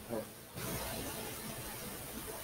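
A steady background hiss comes up suddenly about half a second in and holds level, after a brief spoken 'uh'.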